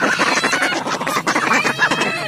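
A basket of domestic ducks quacking loudly, many calls overlapping in a continuous, dense chorus.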